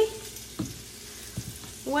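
Bacon frying in a pan on medium-high heat: a faint, steady sizzling hiss, with two soft knocks partway through.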